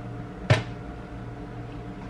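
A package of rice cakes dropped onto a kitchen counter: one sharp, loud thud about half a second in, over a steady low hum.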